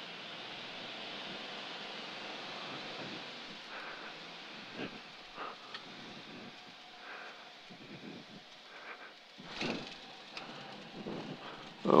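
Faint rushing airflow and engine noise from a light aircraft on short final approach in gusty, turbulent wind, with irregular knocks and surges, the biggest about five seconds in and near ten seconds.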